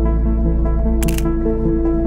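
Background music with held notes; about a second in, a single short camera shutter click sounds over it.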